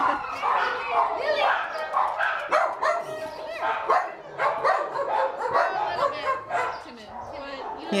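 Several shelter dogs barking and yipping from their kennels, the barks overlapping with no break.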